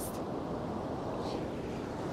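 Steady, fairly quiet rush of surf washing on the shore, with no distinct events.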